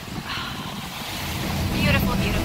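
Wind buffeting the microphone over small waves breaking on a sandy Lake Michigan shore on a choppy day, with brief snatches of people's voices.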